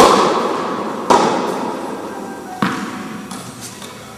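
Tennis ball struck by rackets in a rally: three sharp strokes roughly a second and a half apart, each followed by a long echoing decay. The first stroke is the loudest.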